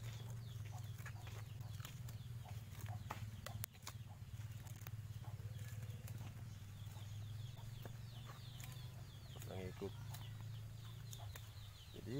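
A steady low hum with chickens clucking in the background, and faint clicks and crinkles of a plastic strip being wound around a grafted cassava stem.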